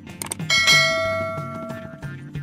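Subscribe-button sound effect: a couple of quick mouse-style clicks, then a bright bell chime about half a second in that rings and slowly fades, over background music.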